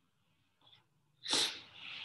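A person's sudden, sharp burst of breath close to the microphone a little over a second in, followed by a softer breath trailing off near the end.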